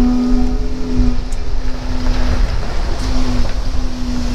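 A Jeep Wrangler JK's engine running as it drives in at low speed, with a steady droning tone that drops out briefly past the middle and then returns. Heavy low rumble of wind on the microphone.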